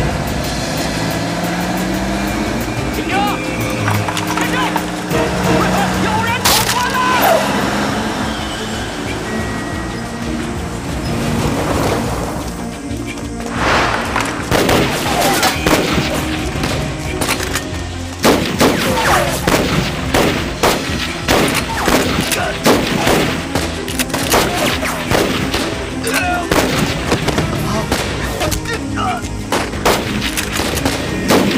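Drama soundtrack: background music over a vehicle engine running, then from about halfway through, a long stretch of rapid, repeated gunfire from rifles in a firefight, mixed with the music.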